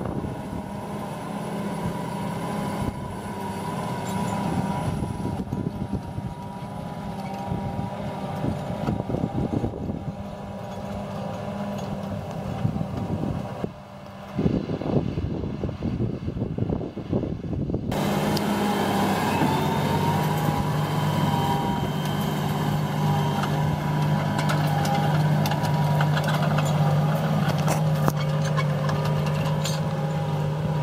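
Tractor diesel engine running steadily under load as it pulls a tine cultivator through dry, crusted soil, with wind and rumble noise. About 19 seconds in, the engine note settles lower and steadier.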